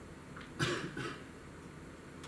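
A person coughing: a short cough of two quick bursts, the first and louder about half a second in, the second about half a second later, over faint room tone.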